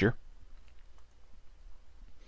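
A few faint, short clicks over quiet room tone, just after a man's voice trails off at the start.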